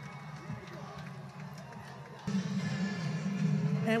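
Music plays quietly and becomes louder a little past the halfway point.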